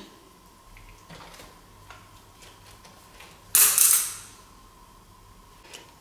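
A few faint clicks from handling a body-fat tape measure, then a single loud, short rushing burst about three and a half seconds in that dies away within half a second.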